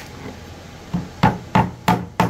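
Hammer tapping a small wooden wedge into a split in a wooden seat board: three quick, sharp taps about a third of a second apart, starting just over a second in, driving the wedge to spread the split open for gluing.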